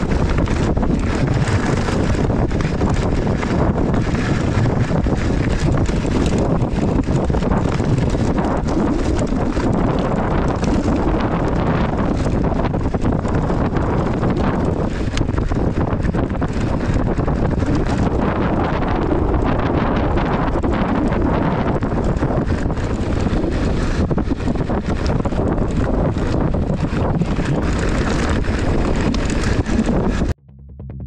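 Wind buffeting the action camera's microphone over a loud, steady rumble and rattle of mountain bike tyres rolling over a loose gravel and stone track.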